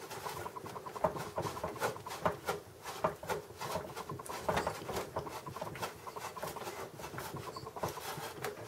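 A small screw being turned by hand with a screwdriver into the computer's sheet-metal chassis: a run of faint, irregular clicks and light scraping as it threads in.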